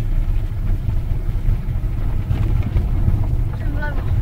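Steady low engine and road rumble inside the cabin of a Volkswagen car being driven along a rough country road.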